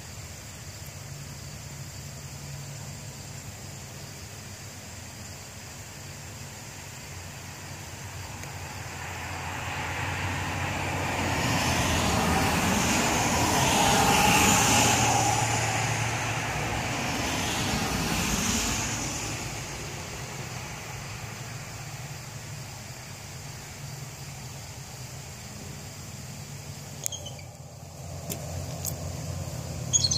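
A road vehicle passes by, its noise swelling about a quarter of the way in, peaking near the middle and fading away by about two-thirds through, over a steady low hum.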